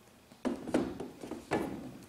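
Air Jordan 12 sneaker being set down and shifted on top of a cardboard shoebox: two dull knocks, the first about half a second in and the second a second later.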